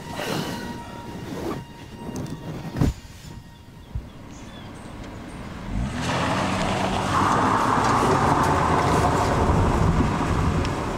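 A car engine revs up about six seconds in and the car drives hard on a dirt road, with steady engine and tyre-on-gravel noise to the end. Before that it is quieter, with a few knocks and one sharp thud nearly three seconds in.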